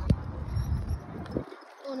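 Low rumble of wind and handling noise on a hand-held phone microphone while riding a bike, with one sharp click just after the start. The rumble cuts out about a second and a half in, just before a child's voice says "oh".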